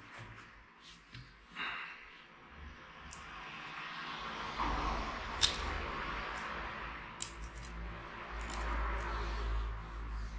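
Hands handling a folding camera drone on a table: a steady rustling and scraping that builds after the first couple of seconds, with a few small sharp clicks and a low rumble in the second half.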